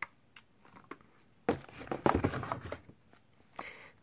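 Cardboard fireworks cakes being handled: a click, then about a second of scraping and rustling as a cake is pulled from a stack, with a few light knocks.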